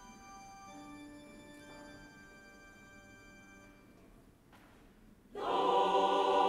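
Soft held instrumental notes, then a choir starts singing, much louder, about five seconds in.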